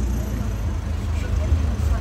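Outdoor street ambience: a steady low rumble, with faint voices in the background.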